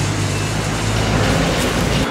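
Steady street noise with a low, even rumble like passing motor traffic.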